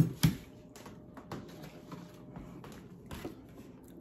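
A person chewing a mouthful of creamy scalloped potatoes: a sharp lip smack just after the start, then scattered soft mouth clicks.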